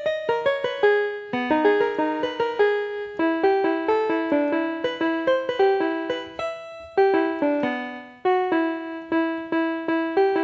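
Piano played fast from memory: a quick melody of many struck notes over repeated mid-range notes, with short breaks about seven and eight seconds in.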